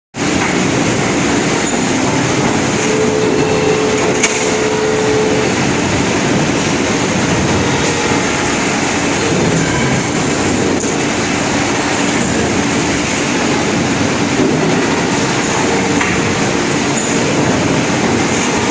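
Plastic injection moulding machine and conveyor running: a loud, steady mechanical noise, with a single sharp click about four seconds in.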